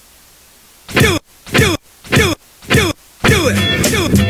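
Intro music: four short hits, each falling in pitch, about half a second apart, then a funky track with bass guitar starts near the end.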